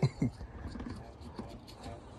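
Faint handling noise of a gloved finger rubbing oil around the rubber gasket of a new spin-on oil filter: small soft rubs and ticks, lubricating the seal before the filter is installed.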